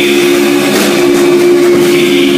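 Loud live band playing a sustained, droning chord, with a couple of sharp hits about a second in and near the end.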